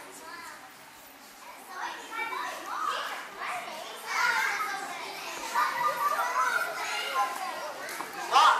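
A group of young children talking and calling out over one another, quieter at first and growing louder about two seconds in.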